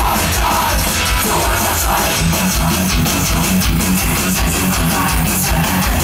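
Live industrial metal band in an instrumental passage: distorted electric guitar and bass guitar over fast, driving drums, with a repeating low riff that comes in about two seconds in.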